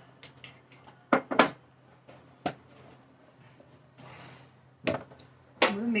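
A few sharp clicks and knocks of a plastic measuring spoon against a glass sugar jar and a steel bowl as sugar is spooned into curd: two close together about a second in, then single ones about halfway and near the end.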